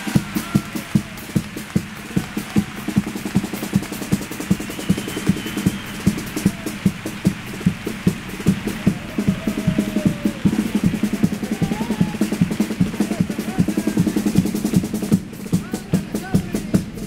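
A chirigota's percussion, bass drum (bombo) and snare (caja), keeping a steady beat, with faint voices over it.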